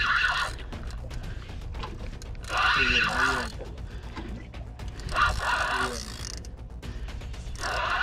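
Saltwater spinning reel cranked in short spells, its gears whining about four times, as a hooked fish is reeled in toward the boat. A steady rumble runs underneath.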